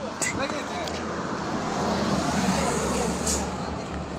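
Street traffic noise in a phone-recorded clip, swelling around the middle and easing near the end, with faint voices.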